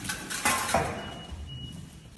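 Light clattering and knocks, loudest about half a second in, with a faint thin high tone near the end.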